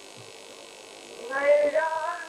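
Steady low electrical hum and tape hiss for a little over a second, then a voice comes in chanting a noha lament with long held notes, loud almost at once.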